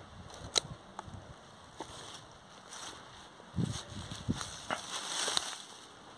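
Pruning shears snipping through a pumpkin stem with one sharp click about half a second in, followed by scattered small clicks, soft knocks and brief rustling of leaves and vines as the stems and pumpkins are handled.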